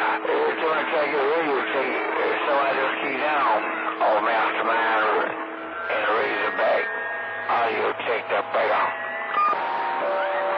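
CB radio receiving long-distance skip on channel 28: distant operators' voices come through the speaker distorted and unintelligible, with steady whistling tones under them, a low one through the first half and higher ones for a few seconds past the middle.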